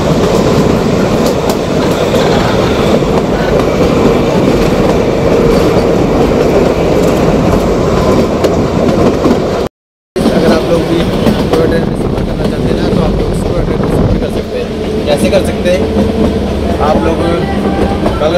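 Narrow-gauge toy train coaches running along the track, heard from an open doorway of a moving coach: a loud, steady rumble of wheels on rail with rushing air. The sound breaks off for a moment about ten seconds in.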